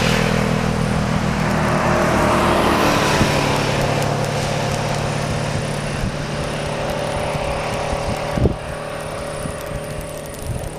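A motorcycle engine passes close by and fades over the first few seconds. The engines of more motorcycles then run further off and slowly get quieter. There is one short thump about eight and a half seconds in.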